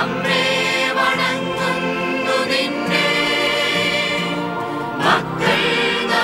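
A choir singing in held, sustained notes, with a short burst of noise at the start and another about five seconds in.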